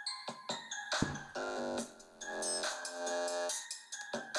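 Background party music: an electronic keyboard melody of separate notes.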